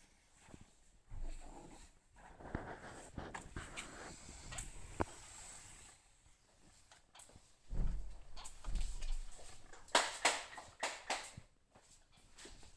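Irregular work and handling noises around a car's wet rear window during tinting: rustling, scrapes and scattered knocks, with a cluster of sharper knocks and rustles near the end.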